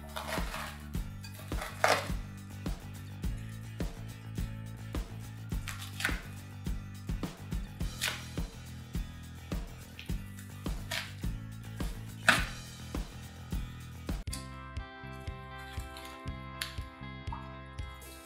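Background music with a steady beat, changing to a sustained tune about two-thirds of the way in. Over it, hands squeeze and tear crumbly, foamy slime in a glass bowl, with a few sharp crackles and squelches, the loudest about two seconds and twelve seconds in.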